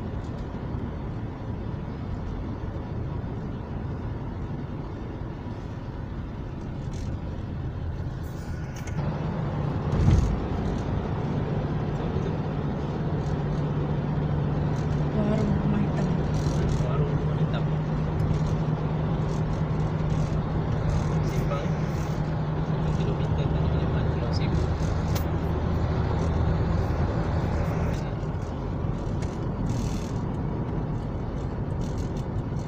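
Car cabin noise while driving on a wet road: steady tyre and engine noise. About a third of the way in there is a sharp thump, and after it the noise is louder, with a steady low engine hum through most of the rest.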